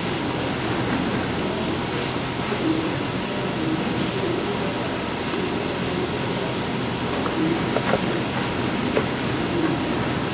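Eagle CP60H pyramid-style angle roll running, its rolls turning as a length of steel angle iron feeds through and is bent to a four-foot radius. A steady mechanical running noise, with a few faint clicks in the second half.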